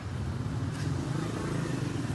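An engine running steadily at idle, a low even hum under general outdoor noise.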